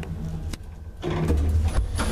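Old passenger elevator giving a steady low rumble with a few sharp clicks and knocks; the rumble drops briefly about halfway through, then comes back louder.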